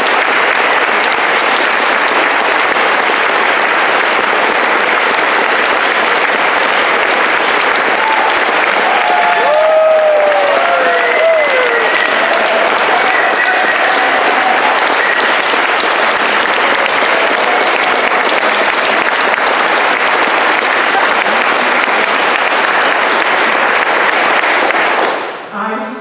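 An audience clapping steadily for about 25 seconds, with a few voices calling out in the middle, and the clapping stops abruptly just before the end.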